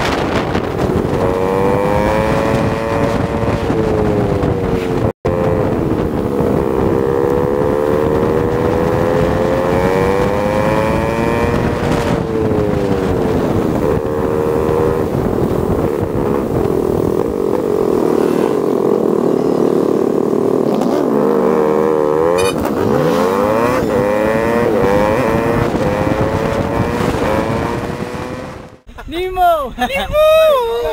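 Motorcycle engine rising and falling in pitch as the throttle opens and closes through the gears while riding, under wind noise on a helmet-mounted camera. The climbs are steeper and quicker about two thirds of the way in.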